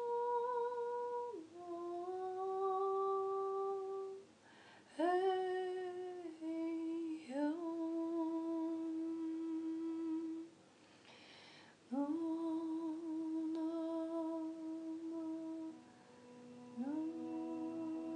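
A woman's voice humming a wordless light-language chant in long held notes, most scooping up into pitch and held for a few seconds, with short pauses between phrases. Near the end a lower held tone comes in beneath the melody.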